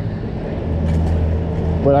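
A motor vehicle engine idling nearby, a steady low drone that sets in about half a second in, over general street noise.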